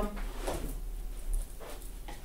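Faint, scattered handling and rummaging sounds as things are moved about in a search for a box.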